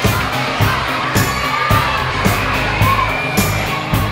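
Small brass-and-drums pep band, with trumpets, sousaphone and clarinet, playing to a steady beat of about two a second, under a crowd of children shouting and cheering.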